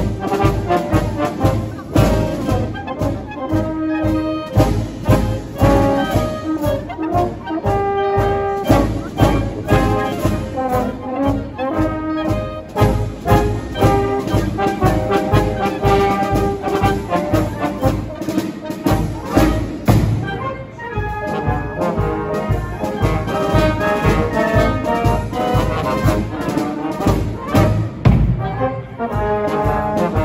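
A town wind band of clarinets, saxophones, trumpets, trombones and tubas playing a tune together over a steady beat.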